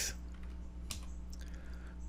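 A few computer keyboard keystrokes as a class name is typed into a code editor, heard over a steady low hum.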